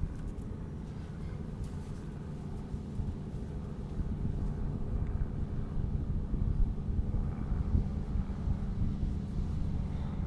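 Wind buffeting the microphone outdoors, an uneven low rumble that swells a little after the first few seconds.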